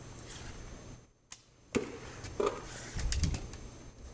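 Homemade PVC bow shot: a sharp snap of the string on release a little before halfway through, followed by a few fainter clicks and knocks.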